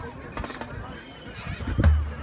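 Spectators talking and calling out in an outdoor crowd, with scattered short knocks and a brief low rumble on the microphone near the end.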